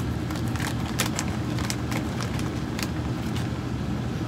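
Foil potato chip bag crinkling and crackling in irregular snaps as a hand rummages inside and pulls out a chip, over a steady low background hum.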